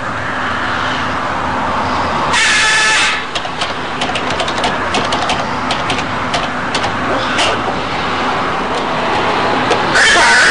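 Blue-and-gold macaw giving one loud, harsh squawk about two and a half seconds in, over a steady background noise with a low hum. A run of sharp clicks follows.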